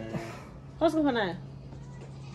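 A single animal call about a second in, its pitch falling over about half a second, over a steady low hum.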